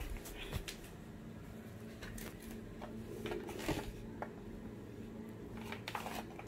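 Faint rustles and a few soft knocks as a person steps onto a digital bathroom scale, over a low steady room hum.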